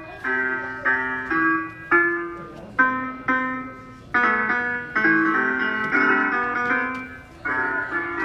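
Electronic piano keys on a play-area panel being played by hand: single notes tapped about twice a second, each fading away, with a few sounding together about four seconds in.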